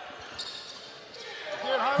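Court noise of a live basketball game in a gym: a low, even haze of players and crowd, with a man's voice coming in near the end.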